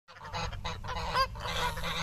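A flock of domestic geese honking, many short calls overlapping one another.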